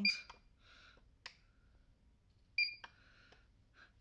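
APC Back-UPS Pro BN1500M2 battery backup giving short, high electronic beeps as its sound-off button is pressed: one beep right at the start and another about two and a half seconds later, with a couple of sharp clicks in between.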